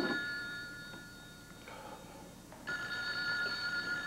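Telephone ringing: one ring fades out in the first second, then after a pause the next ring starts about three seconds in.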